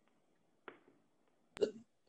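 A near-silent pause on a video call. A faint click comes under a second in. Near the end there is a sharp click, then a short throat sound from a man about to speak.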